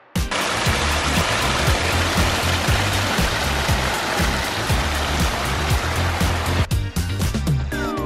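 Water splashing and rushing steadily over the rocks of a small garden waterfall, mixed with background electronic music that has a steady beat. The water sound cuts off just before the end, leaving the music, where falling sweeping tones come in.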